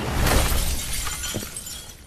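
Glass smashing: a sudden loud crash of breaking glass whose noise dies away over about a second and a half.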